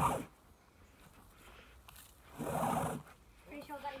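A man's breathy grunts of effort, a short one at the start and a longer heavy one about two and a half seconds in, as he yanks hard on a liferaft's painter line that fails to set it off; his voice starts near the end.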